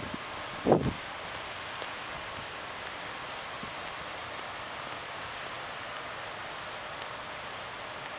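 Steady, even outdoor background hiss with a faint high-pitched whine running under it. A brief voice-like sound comes about a second in.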